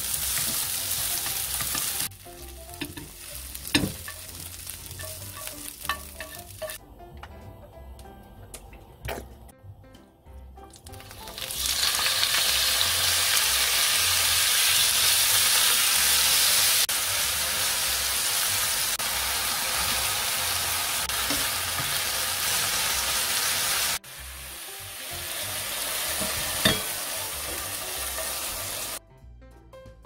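Vegetables and then strips of beef sizzling in a hot nonstick frying pan as they are stir-fried with chopsticks. The sizzle is loudest and steadiest from about 12 to 24 seconds, with a quieter stretch of scattered clicks and taps before it.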